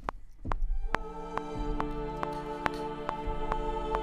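Playback of an orchestral trailer-music mock-up built from sample libraries: a held choir and string chord comes in about a second in and sustains. A sharp click falls on every beat, about two a second.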